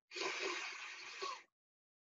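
A woman taking one deep breath in, a steady breathy rush lasting about a second and a half, as the inhale of a guided breathing exercise before the breath is held at the top.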